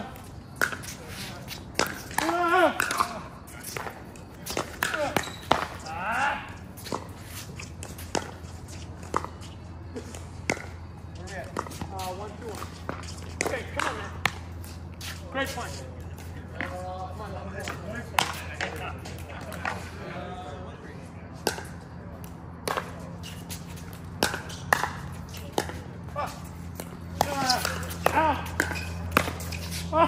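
Pickleball being played: sharp, short pops of paddles hitting the plastic ball and the ball bouncing on the hard court, coming irregularly throughout. A steady low hum runs underneath and grows stronger in the second half.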